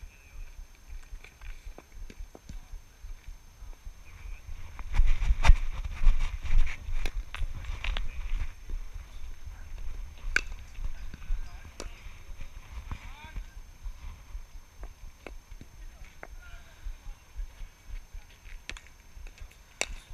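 Footsteps on grass with wind rumbling on the camera microphone, louder for a few seconds about a third of the way in, and a scatter of short clicks and knocks.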